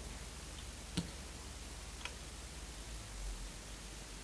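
Faint handling clicks, a sharp one about a second in and a lighter one a second later, over a steady low electrical hum.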